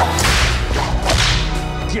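Leather bullwhip lashed twice, each stroke a swish ending in a sharp crack, about a second apart, over steady background music.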